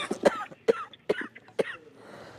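A man coughing into his fist: a run of about five short, sharp coughs.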